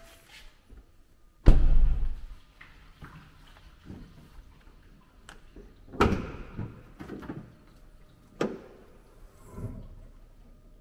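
BMW F15 X5's driver's door shut with a heavy thud about one and a half seconds in, then the clunk of the hood's front safety catch being released and the hood raised about six seconds in, followed by a sharp click and a softer knock near the end.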